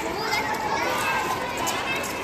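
A crowd of schoolchildren talking and calling out all at once: a steady babble of many overlapping children's voices.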